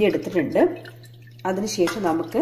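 Speech in two short phrases with a pause between, over a steady low hum.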